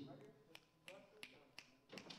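Near silence in a small room, with about five faint, sharp clicks coming roughly three a second.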